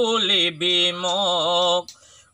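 A man singing an Assamese folk song unaccompanied, holding a long wavering note that drops in pitch and then breaks off just before the end.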